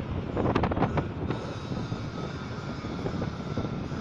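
Steady rumble of passing road traffic, with a few brief knocks about half a second to a second in.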